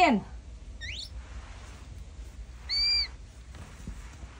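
Two high-pitched animal calls: a short, faint rising chirp about a second in, then a louder arched, whistle-like call about three seconds in.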